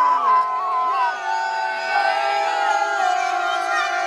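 A crowd of fans cheering and whooping, many voices holding long shouts at different pitches over one another.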